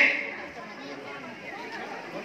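Low chatter of a crowd, many faint overlapping voices, after a man's loud amplified voice breaks off at the very start.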